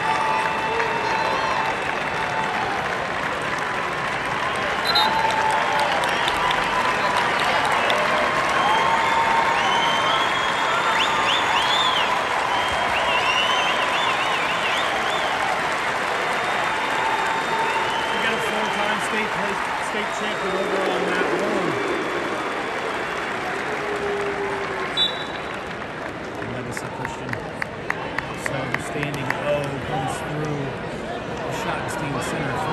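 Arena crowd noise: many voices cheering and shouting, with applause, loud and steady through most of the stretch. It thins out near the end, where a few sharp claps stand out.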